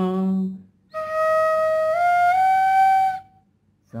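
Bamboo bansuri playing a short plain phrase of three held notes, each a step higher than the last, lasting about two seconds, with no ornaments. Before it, a man's sung sargam note ends in the first half second.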